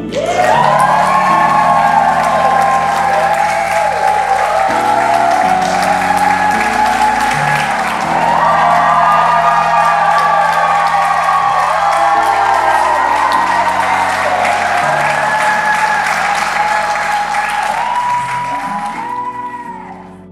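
A congregation applauding over background music with slowly changing chords; the applause and music fade out near the end.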